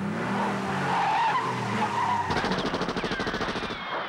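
Cartoon sound effects under the title card: a loud screeching, rushing noise, then from about two seconds in a fast, even rattle like rapid gunfire that fades at the end.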